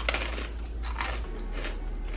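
Small plastic snack packet being picked and torn open by hand: a run of crisp crinkles and rustles, a few each second.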